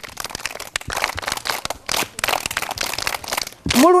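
A group of children clapping their hands: many quick, uneven claps that stop near the end.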